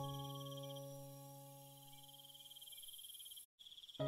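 A soft piano chord dying away slowly over a steady, high, pulsing chirp of crickets. Near the end the sound cuts out completely for an instant.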